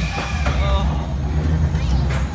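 Roller coaster train running along its tubular steel track, a steady low rumble.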